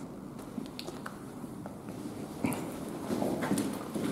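Quiet shuffling footsteps and scattered small clicks of movement on a hard floor, with a louder scuff about two and a half seconds in.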